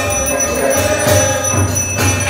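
A temple aarti bell ringing steadily over devotional aarti music with a low, pulsing beat.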